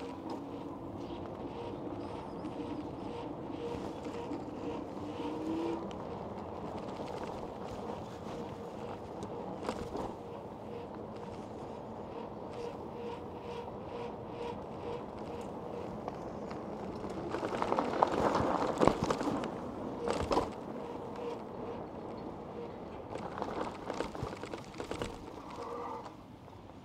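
Electric bike riding along a paved path: a faint steady motor whine over tyre and road noise, the whine's pitch rising slightly about six seconds in before it drops away. A louder, rougher stretch of rattle and rolling noise comes around eighteen seconds, with a few sharp knocks from bumps along the way.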